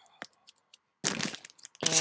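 A few faint clicks, then a brief crinkle of packaging being handled about a second in.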